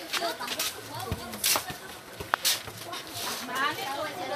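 Children's voices and chatter, with a few short sharp knocks in the middle.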